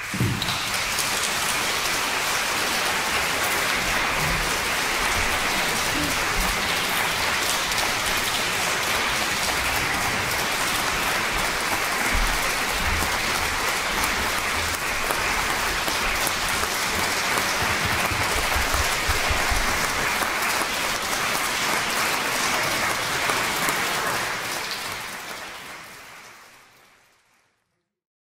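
Audience applause that starts suddenly, holds steady, then fades out over the last few seconds.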